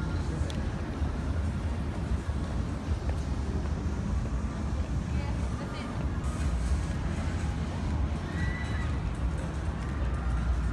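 Faint, indistinct voices over a steady outdoor background noise.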